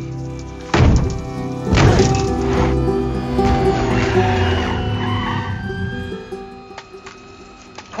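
Cinematic orchestral score with deep percussive hits about a second apart in the first three seconds, over sustained low tones. A sliding, falling tone follows, and then the music thins out and quietens.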